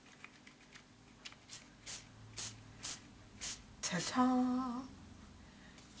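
Short hissing puffs from a pump spray bottle of homemade spray paint, about five in a little over two seconds, then a woman briefly hums a steady note.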